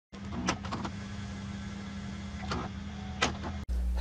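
Title-card sound effect: a steady electrical hum with hiss, broken by a few sharp glitchy clicks, that cuts off abruptly just before the end.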